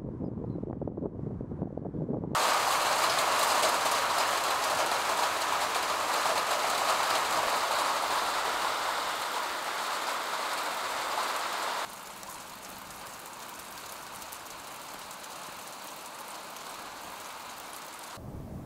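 Steady rain falling, an even hiss that starts suddenly a couple of seconds in and drops to a softer level after about twelve seconds. Before it, a low rumble.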